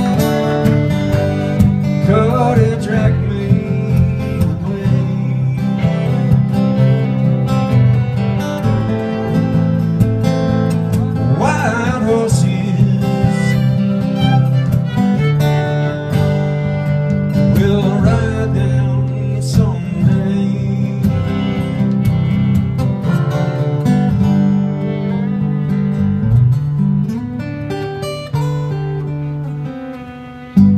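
An 1800s violin playing a fiddle line with slides over two strummed acoustic guitars in a live acoustic jam, getting quieter over the last few seconds as the tune winds down.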